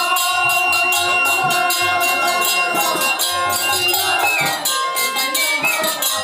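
Bansuri bamboo flute playing a slow devotional kirtan melody with long held notes, over steady rhythmic clashing of brass hand cymbals (kartals).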